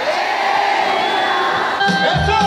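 Live band music with crowd noise: the drums and bass drop out and a single long held note carries on over the crowd, then the beat comes back in near the end.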